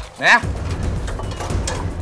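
A man calls out one short word, then steady low background hum with no distinct knocks.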